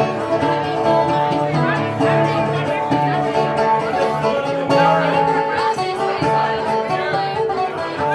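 Instrumental passage of a folk song played on a long-necked plucked string instrument, a run of melody notes over held chords, with pub chatter underneath.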